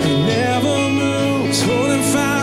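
Live worship band music: a female lead voice singing long held notes with vibrato over electric bass and guitar.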